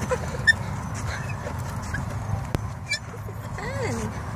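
A wheelbarrow rolling over a bumpy dirt path with a steady low rumble and a sharp knock about half a second in. Near the end a baby gives a short babbling call that rises and falls.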